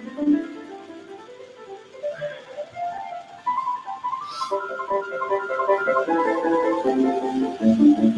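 Instrumental background music: a melody of distinct, changing notes, with a short hiss about four and a half seconds in.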